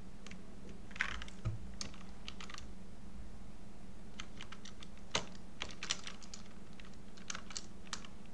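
Typing on a computer keyboard: sharp key clicks in three short bursts, with a faint steady hum underneath.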